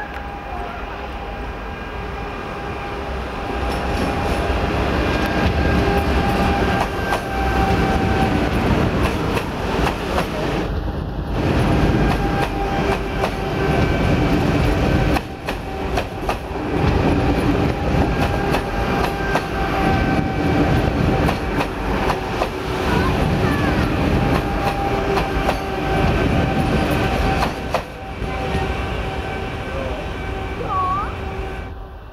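České dráhy class 680 Pendolino electric train running close past at speed: a loud rumble of wheels on rail, with a surge every second or two as each bogie goes by and a scatter of clicks. The rumble builds over the first few seconds and stays loud until near the end.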